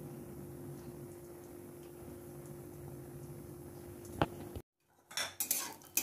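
A ladle clinking and scraping against a metal kadhai as nuts frying in ghee are stirred, in a cluster of sharp clinks near the end. Before that only a faint steady hum, broken by one sharp click about four seconds in and a brief dead gap.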